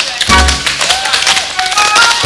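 A group of tap dancers' shoes striking the stage in fast, dense rhythms over loud band music, with a deep bass note hitting about a third of a second in.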